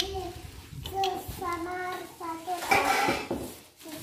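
Rustling and metal clatter of machine parts being unpacked from bubble wrap and a cardboard box, with a burst of it about three seconds in, under high-pitched voices, a child's among them.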